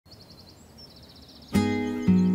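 Faint trilling bird chirps over quiet outdoor ambience. About one and a half seconds in, a loud acoustic guitar chord is strummed, opening the song's introduction.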